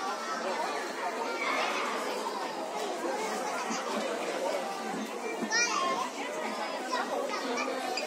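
Young children's voices as they play, over steady background chatter; one child's high-pitched squeal stands out about five and a half seconds in.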